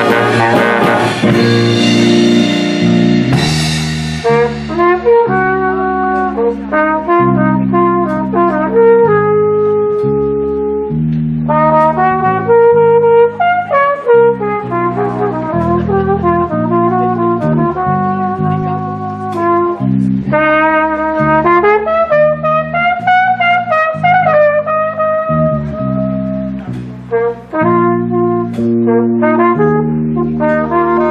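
Jazz big band of saxophones, trumpets and trombones with drum kit playing. It is loud with cymbals over the full band for the first few seconds, then settles into softer sustained chords with a melody line moving over a walking bass.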